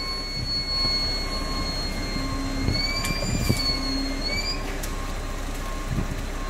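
Heavy construction machinery running steadily, with a high whine that wavers and rises slightly past the middle.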